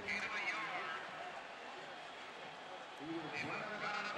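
Steady background murmur of a large stadium crowd, with faint talking in the first second and again near the end.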